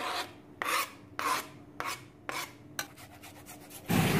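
A knife blade scraping across a plastic cutting board, sweeping chopped vegetables off into a bowl: about six short scraping strokes, roughly two a second, growing weaker in the last second.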